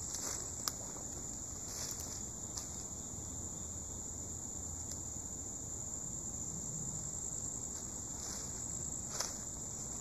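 Steady high-pitched drone of insects singing in the woods, with a few sharp snaps, the loudest about two thirds of a second in and again near the end.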